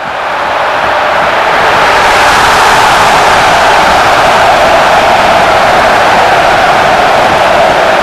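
Loud, steady rushing noise that swells up within the first second or two and then holds, an added sound effect under an animated scoreboard goal graphic.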